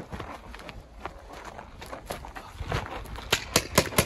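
Footsteps and gear movement on dirt, then about four sharp pops roughly a quarter second apart in the last second: paintball markers firing.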